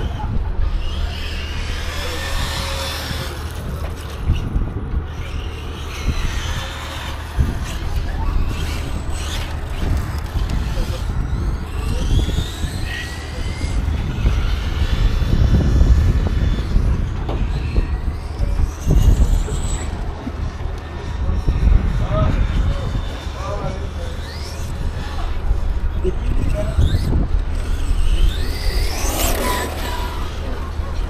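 Battery-electric 1/8-scale RC car's brushless motor whining, its pitch rising sharply several times as the car accelerates around the track. Wind rumbles on the microphone throughout.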